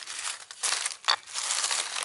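Dry leaves and tinder rustling and crinkling as they are handled, in several short bursts.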